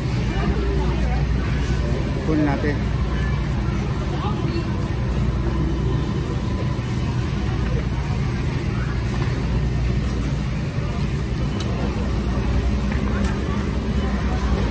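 Store ambience: a steady low hum from the building's machinery, with faint voices of other shoppers in the background.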